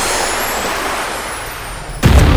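Ocean surf: a steady wash of breaking waves, easing a little toward the end.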